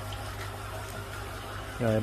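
Aquarium water pump left running: a steady low hum with the sound of moving water.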